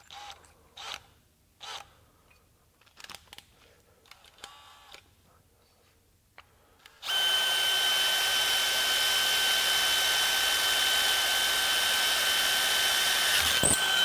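A few faint clicks, then about seven seconds in a DeWalt XR cordless drill starts and runs steadily for about seven seconds, driving a 5/16-inch Spyder Mach Blue Stinger bit through aluminum plate, with a steady high whine over the motor and cutting noise. It stops just before the end.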